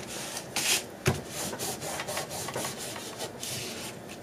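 Hands rubbing and pressing down on paper, smoothing freshly glued layers of a paper journal so they stick: a run of soft swishing strokes, with a light knock about a second in.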